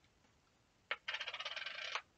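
Metal hand file rasping quickly against a plastic miniature to clean off sprue flash. A click about a second in, then just under a second of dense, fine-grained scraping that stops abruptly.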